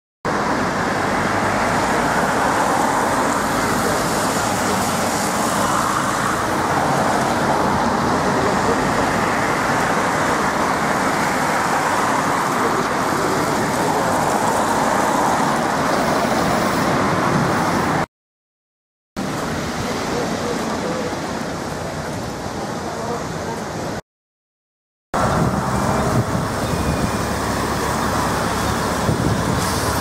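Road traffic on a wet street: vintage single-decker buses and cars pass close by in a steady wash of engine and road noise. The sound drops out to silence twice, briefly, where the clips are cut.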